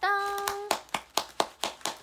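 One person clapping her hands quickly, a run of about ten sharp claps at roughly seven a second, starting less than a second in after a drawn-out syllable of her voice.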